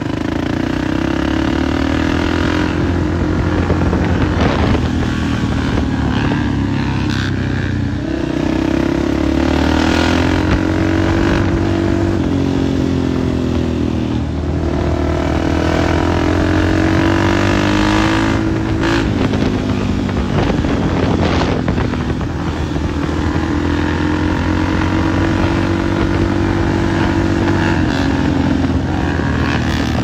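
Motorcycle engines running on a street ride, the nearest one loud. Its revs climb in long swells and fall back several times, with sharp drops as the throttle comes off.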